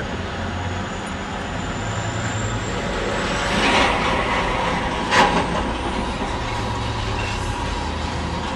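Car engine and road noise heard from inside the cabin as the car pulls away and drives on, a steady rumble with a swell in the middle. A single short, sharp knock comes about five seconds in.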